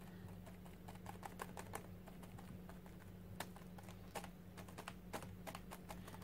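Sponge dabbing acrylic paint through a stencil onto a paper journal page: faint, irregular soft taps, pressed gently, over a low steady hum.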